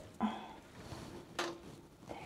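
Plastic toilet seat and lid being handled onto their hinges: a soft knock shortly after the start, then a sharp click about a second and a half in.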